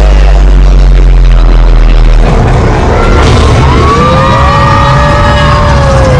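Indoor roller coaster running at speed through a dark tunnel: a loud, heavy low rumble that turns rough and uneven about two seconds in. From about halfway, a long drawn-out wavering tone that slowly falls runs over the rumble.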